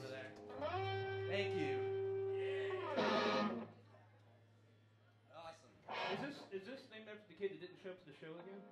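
Live band music with guitar: a held note for about two seconds, then a loud strummed burst about three seconds in, after which the sound drops to a quiet gap before scattered guitar notes start again.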